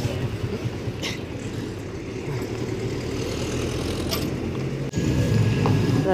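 Motorcycle tricycle's small engine running steadily while riding along a street, with two brief sharp clicks from the ride.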